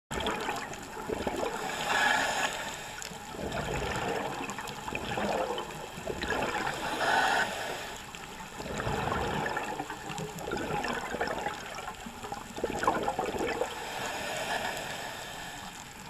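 Scuba diver's regulator breathing underwater: exhaled bubbles rushing and gurgling in repeated bursts a few seconds apart.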